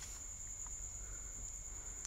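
Electric hand mixer running steadily, its beaters whisking a thick cream, heard as a constant high-pitched whine over a low hum.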